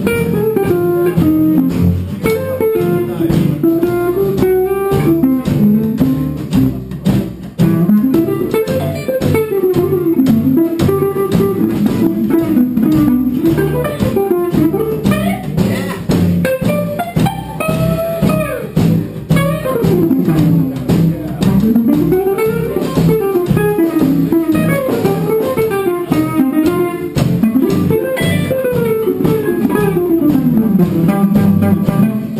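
A small traditional jazz band playing live: archtop guitar and other strings strumming a steady beat over double bass, with a melody line rising and falling above them.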